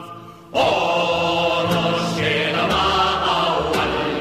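Background music of choral singing, with long held notes. After a brief drop in level at the start, the voices come back in loudly about half a second in.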